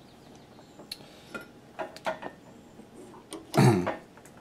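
Scattered faint clicks and light taps of small hand tools and a tiny component being handled. Near the end comes a short, louder throat clear.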